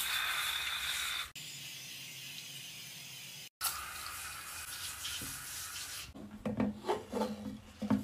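Spray bottle spraying cleaner over shower tile and a tub: a long hiss, loudest for about the first second, then quieter, then after a break a second long hiss. Near the end, a run of light knocks and clatters.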